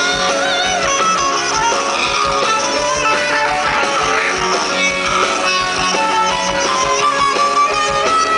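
Live rock band playing, electric guitar to the fore, with a high lead line wavering in pitch over the chords.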